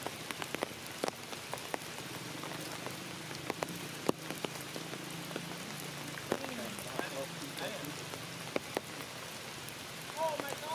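Rain falling on forest leaves: a steady patter with many scattered drops ticking sharply close by.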